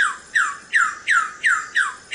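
Wilson's bird-of-paradise calling: a quick run of six harsh squawks, each sliding sharply down in pitch, about three a second.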